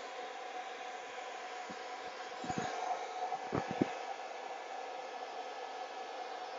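Hands-free pet dryer blowing steadily through its flexible hose, a continuous rush of air with a faint hum. A few soft thumps come near the middle.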